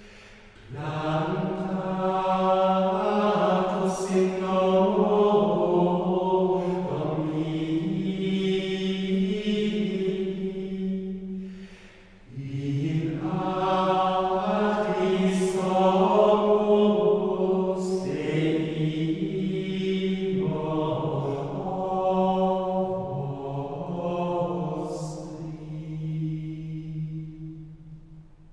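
Gregorian chant sung in unison by men's voices, in long held phrases with a short breath break about halfway through.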